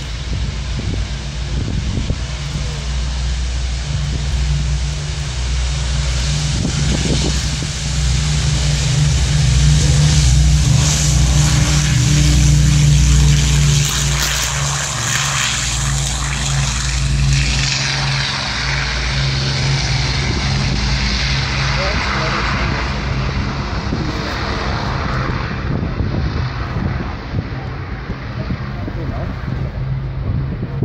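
Avro Lancaster's four Rolls-Royce Merlin V12 piston engines at takeoff power through the takeoff roll. It grows loudest around the middle as the bomber passes close by, then the pitch drops as it goes past and lifts off.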